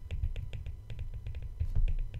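Stylus tapping and scratching on a tablet screen while printing capital letters: a quick run of light irregular ticks over a low rumble.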